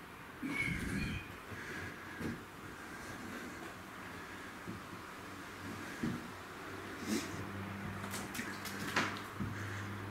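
Slow footsteps and soft knocks on an old, uncertain floor, with a short creak about half a second in and a few faint clicks after.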